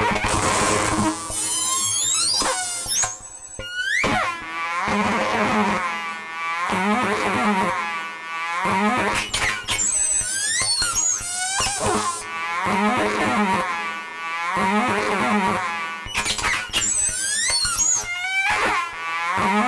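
Eurorack modular synthesizer playing a chaotic feedback patch built around an envelope follower. Swooping tones fall and rise in repeating swells about every two seconds, with high squeaky chirps over them and a brief drop-out about three seconds in.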